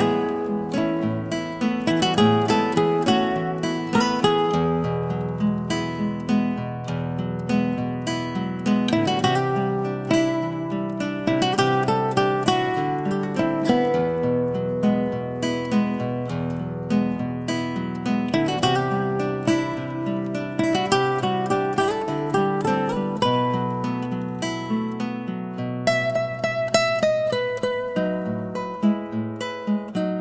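Background music: acoustic guitar played with plucked and strummed notes.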